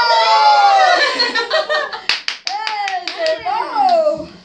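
A group of young children shrieking and cheering together as petals are thrown, followed by a quick run of hand claps about two seconds in, with the children's excited voices carrying on.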